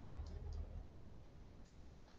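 A few faint clicks of a computer mouse, spread unevenly over the two seconds, over a low room hum.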